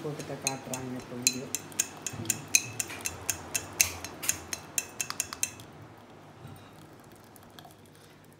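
Plastic tea strainer and steel pans clicking and tapping against each other as tea is poured through the strainer: a quick, uneven run of sharp clicks, about four a second, that stops about two-thirds of the way through.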